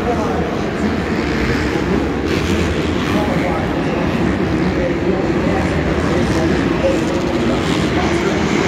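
Supercross bikes' four-stroke single-cylinder engines revving up and down as riders lap the dirt track, heard across a domed stadium under a steady murmur of spectators' voices.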